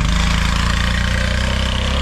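Bajaj RE auto-rickshaw's small single-cylinder engine running steadily as the three-wheeler pulls away.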